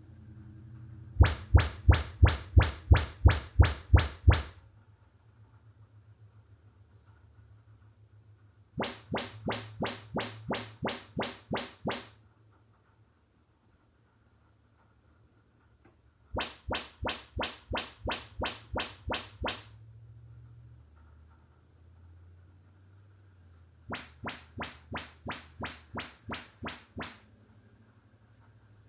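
Audyssey MultEQ XT32 calibration test chirps from a Denon AVR-X3200W, played through one speaker after another: four bursts of about ten quick chirps each, roughly three a second, with pauses between them. The first burst is the loudest and heaviest in bass, from the left front Definitive Technology Mythos ST SuperTower with its built-in powered subwoofer. A faint low hum fills the gaps.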